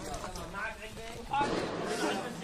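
Indistinct talk among a group of men, several voices overlapping, growing louder about two-thirds of the way in.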